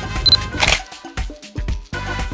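Upbeat background music with a steady beat, with a short high beep and then a single camera shutter click about half a second in.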